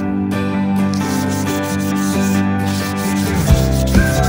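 Sandpaper rubbed by hand over the inside of a carved wooden kumete bowl, with music playing.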